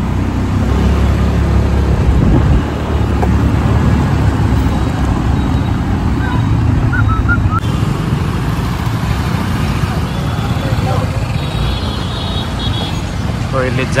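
Wind buffeting the phone microphone on a moving two-wheeler, a loud steady low rumble mixed with the engine and tyre noise of surrounding motorcycle traffic. A few brief high chirps sound about six seconds in.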